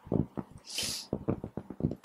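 Plastic rolling ruler handled and set down on a drawing sheet: a string of light clicks and knocks, with a short hiss a little under a second in.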